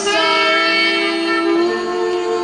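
A song playing from a vinyl record on a turntable: a high singing voice slides up into a long held note over instrumental accompaniment.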